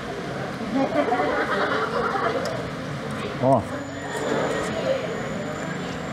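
Background voices of people talking in a busy restaurant, with a man's brief "oh" about three and a half seconds in; no distinct non-speech sound stands out.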